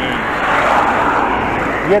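A car overtaking the bicycle: the rush of its tyres and engine swells to a peak about a second in, then fades.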